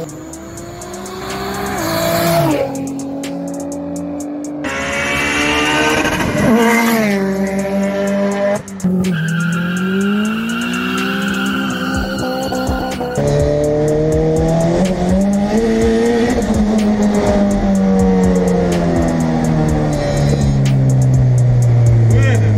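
Car engines revving hard, their pitch climbing and falling repeatedly, with tyres squealing, in a string of short clips that cut off abruptly.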